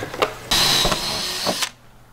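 Cordless drill running at speed for about a second with a steady whine, starting and cutting off abruptly, as it drives a fastener into a freshwater fill panel on a school bus's metal side.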